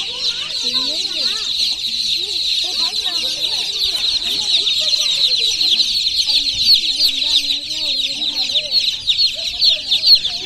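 A crowd of baby chicks peeping without a break, many short high chirps overlapping into a dense chorus.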